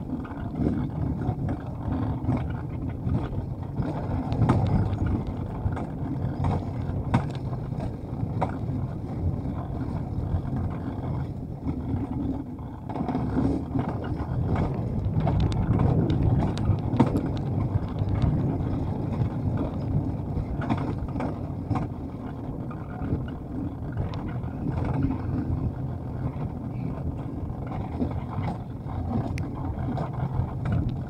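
Alpine coaster sled running down its metal rail: a steady low rumble from the wheels on the track, with occasional short clicks.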